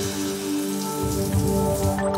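Shower water falling steadily in a continuous hiss, with sustained background music underneath.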